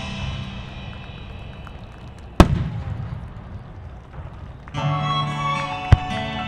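A firework shell bursting with one sharp bang about two and a half seconds in, over music that is fading away; new music starts near the end, with a second, smaller pop just before it ends.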